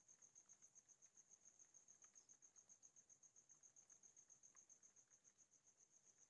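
Near silence with a faint, steady, high-pitched cricket chirping, a rapid even pulse of about eight chirps a second.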